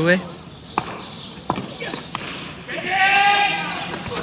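Cricket ball bouncing on the asphalt and struck by the bat: two sharp knocks about three quarters of a second apart, followed by a long, high-pitched shout from a player as the batsmen run.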